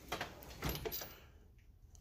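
Soft-close drawer of a Mac Tools Edge series tool box sliding shut on its runners: a few light clicks and a soft rolling sound for about a second as the soft-close slides draw it in, then it settles.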